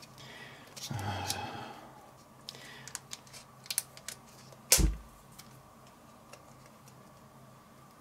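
A metal spoon prying and tapping at the plastic lid of a tzatziki tub that won't open, making scattered light clicks with one sharper click about five seconds in.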